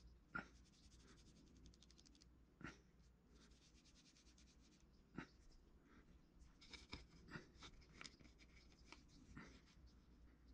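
Faint scratching and light, scattered taps of hand tools and fingers working oil-based modelling clay on a wooden cutting board, over a low room hum.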